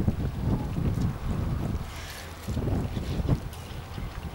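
Wind buffeting the microphone in irregular gusts, a low rumbling with a rushing hiss about halfway through.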